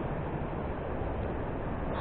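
Steady rush of river water flowing below a dam, an even noise with a low rumble underneath.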